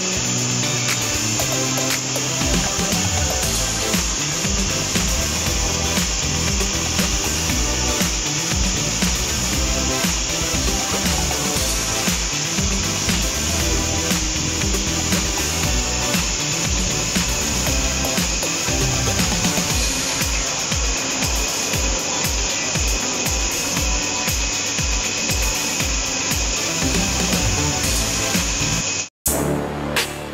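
Hilti rig-mounted diamond core drill running steadily as it bores wet into a concrete wall, with a steady high whine, under background music with a steady beat. Both cut off abruptly about a second before the end.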